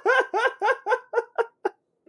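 A person laughing: a run of short "ha" pulses, about five a second, that fade and stop shortly before the end.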